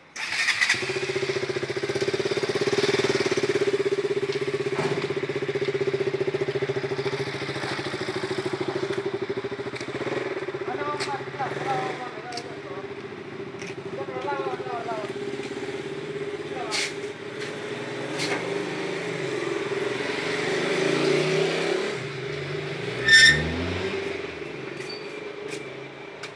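An engine starts suddenly about half a second in and keeps running steadily at an even pitch. A short high squeak, the loudest moment, comes just before the end.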